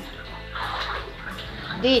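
Bathwater sloshing softly as a small child moves about, sinking low in a filled bathtub.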